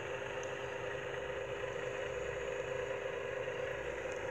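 Steady mechanical hum with a constant mid-pitched tone, even throughout.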